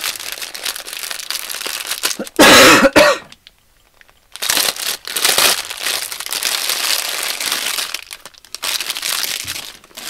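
Clear plastic bag crinkling as it is handled and torn open around a small plush toy. About two and a half seconds in there is a single loud cough, then a brief pause before the crinkling resumes.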